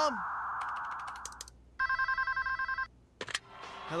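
A steady hiss fades out over the first second and a half. Then a telephone rings once with a rapid electronic trill lasting about a second, followed by a couple of sharp clicks.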